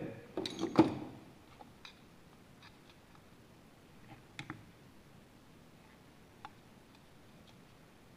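A few faint, scattered metal clicks from a screwdriver unscrewing the main jet from a slide-valve motorcycle carburetor, with one sharper tick near the end.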